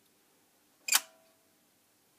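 A single sharp click about a second in, followed by a brief ringing tone, over a faint steady hum.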